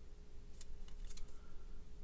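A few faint light clicks and rustles of a trading card being handled and tilted between the fingers.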